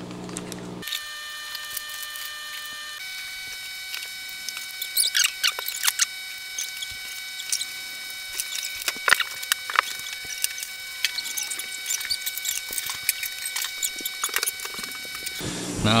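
Plastic parts bags crinkling and rustling, with small clicks of carbon-fibre parts and nylon standoffs being handled and a bag cut open with scissors. Under it runs a steady high whine of several tones that shifts once near the start.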